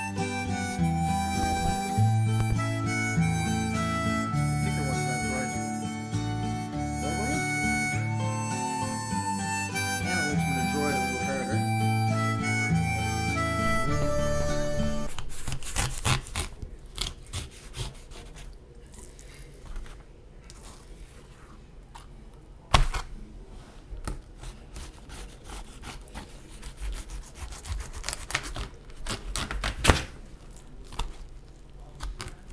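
Instrumental music for about the first half. Then it stops, and a knife is heard cutting and working a raw trout on cardboard: quiet scraping and crunching with scattered clicks and knocks, and one sharp knock about two-thirds of the way through.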